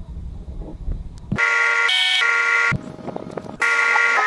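Two long, steady horn-like buzzing tones, the first starting about a second and a half in and briefly jumping higher in pitch midway, the second starting just before the end after a short gap. Before them, a low rumble with a few clicks.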